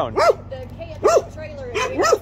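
A small dog barking, three short barks about a second apart, with a thin whine between them.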